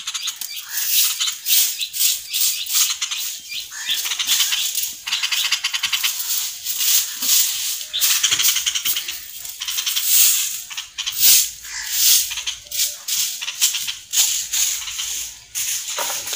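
Hand-held grass broom sweeping dirt and dry leaves on a courtyard floor: a long run of short, scratchy brushing strokes at an uneven pace.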